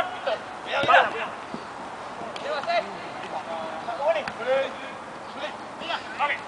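Scattered shouts and calls from players across an outdoor football pitch, the loudest about a second in, with a few short knocks among them.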